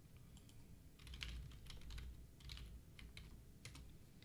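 Faint, irregular keystrokes on a computer keyboard, in small clusters of clicks, over a low hum.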